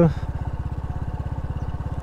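Small motor scooter's engine running steadily under way, a fast even pulsing.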